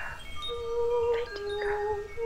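Wind chimes ringing in a soft music bed: bell-like tones at several pitches sound one after another and linger. Under them a lower sustained tone steps between two notes.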